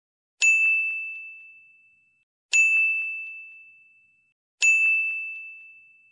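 Three identical bell-like dings, about two seconds apart, each struck sharply and ringing out as it fades away.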